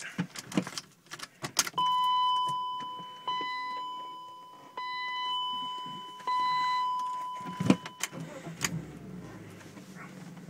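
A 1997 BMW 328is's ignition is switched on: a few key clicks, then the dashboard warning gong sounds four times about a second and a half apart, each tone fading away. About three-quarters of the way through, the inline-six engine starts and settles into a steady idle.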